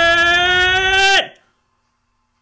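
A man's long, held yell at a steady, slightly rising pitch, cutting off abruptly about a second in.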